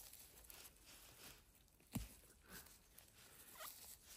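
Faint rustling of grass and moss as a gloved hand picks chanterelle mushrooms from the ground, with one sharp click about halfway through.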